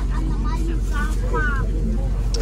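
City bus engine idling with a steady low drone, heard inside the crowded passenger cabin, with voices talking over it.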